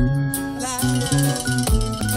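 Reggae music with a deep bass line, sampled from a vinyl record. A new track starts abruptly at the very beginning, with a fuller, brighter mix than what came before.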